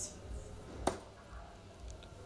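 A single sharp click about a second in, a soft-tip dart striking an electronic dartboard, over faint room noise.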